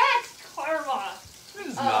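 Speech only: people talking, with no distinct non-speech sound.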